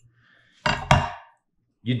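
A steel meat cleaver knocks against a wooden cutting board: a short clatter with one sharp knock, about a second in.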